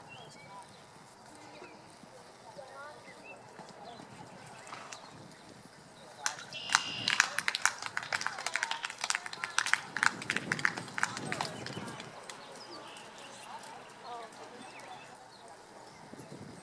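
Horse's hoofbeats on a sand arena under the murmur of people talking. About six seconds in comes a rapid, irregular run of sharp clicks that lasts about six seconds.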